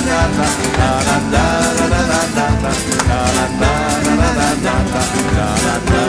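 Live band playing a rumba: strummed acoustic guitar over a steady percussion beat and bass.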